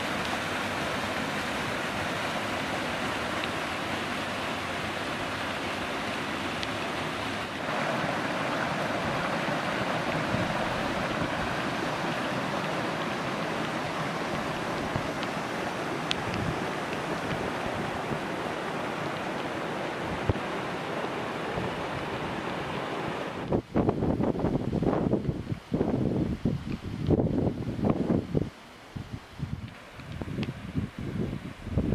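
Muddy, silt-laden water pouring off a rock ledge and rushing over boulders: a steady rush. About 23 seconds in, the rush gives way to uneven gusts of wind buffeting the microphone.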